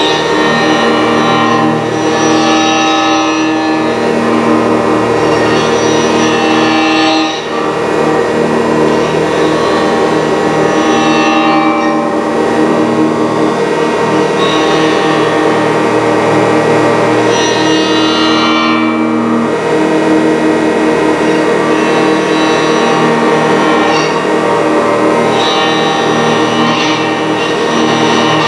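Dense, loud noise improvisation: synthesized square- and sine-wave tones generated from painted colours by the live-coded spectrophone, layered with a bowed acoustic guitar. Many steady tones are held throughout, while clusters of high tones come and go every few seconds, with a brief dip about seven seconds in.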